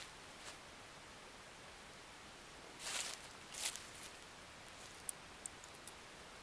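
Footsteps in dry fallen leaves on grass: two rustling steps about three seconds in, then a few faint clicks near the end.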